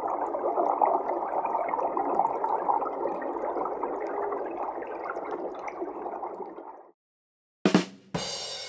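Underwater water sound: steady bubbling and gurgling that cuts off suddenly about a second before the end. A short, sharp burst of sound follows just before the end.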